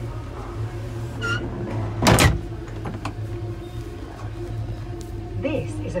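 Train toilet flushing: one short, loud whoosh about two seconds in, over the steady low hum of the train.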